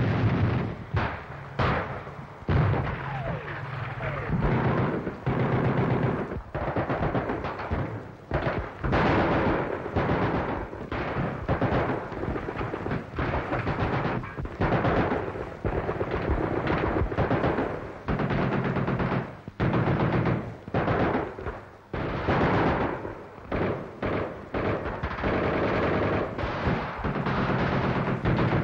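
Gunfire: rifle and machine-gun shots coming thick and fast in irregular bursts, street fighting as heard on a 1944 newsreel soundtrack.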